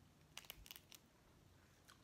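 A quick cluster of short, faint crackling clicks about half a second in, with one more near the end: a boiled crawfish's shell cracking as it is twisted apart by hand.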